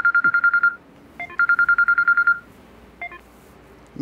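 Mobile phone ringing: a high electronic trill, pulsing very fast, in two rings of about a second each, with a brief start of a third near the end when the call is answered.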